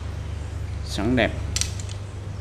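A few quick, light clicks of a carbon fishing rod being handled, its blanks knocking together, just after a single spoken word, over a steady low hum.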